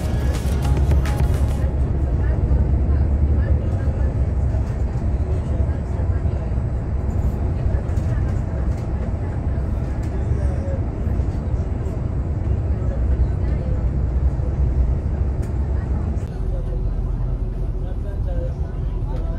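Steady low engine and road rumble heard from inside a moving coach bus, with music playing over it.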